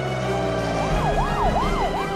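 Siren sound effect wailing in quick rising-and-falling sweeps, about three a second, starting about a second in, over held tones that slowly sink in pitch.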